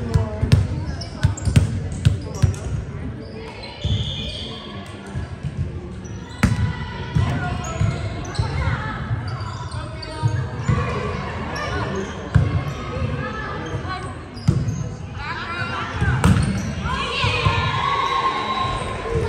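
Indoor volleyball play on a hardwood gym court: repeated dull thuds of the ball and players' feet, with players' voices calling out, heaviest near the end, all echoing in a large hall.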